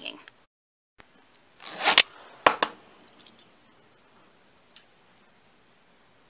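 The plastic toothed rip cord of a LEGO Ninjago Airjitzu flyer launcher is pulled out in one rasping zip about two seconds in, spinning the flyer up and launching it. A sharp click follows, then a few faint ticks.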